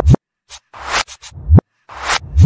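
Pop song played in reverse: reversed drum hits, each swelling up out of nothing and cutting off suddenly on a low thump, in an uneven rhythm of about three hits in two seconds.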